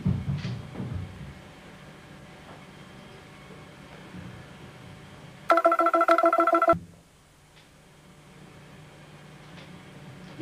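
Electric bass guitar: a low picked note rings out at the start and fades into amplifier hum. About five seconds in, a loud warbling electronic tone cuts in for just over a second, then stops abruptly.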